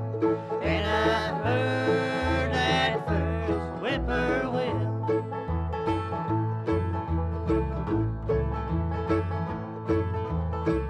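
Bluegrass band playing: upright bass on the beat under acoustic guitar, mandolin and five-string banjo. In the second half the banjo's quick picked rolls come forward.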